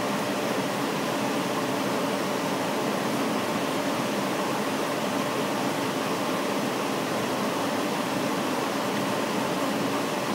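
Laser engraving machine running through an engraving pass, a steady, even whir with no distinct clicks or rhythm.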